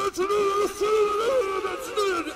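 Hardcore techno track at a breakdown: the kick drum drops out and a pitched, wavering vocal line carries the music.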